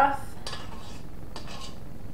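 A spatula scraping sticky dough down the sides of a stainless steel stand-mixer bowl, with a few light scrapes and clicks against the metal. The mixer is switched off.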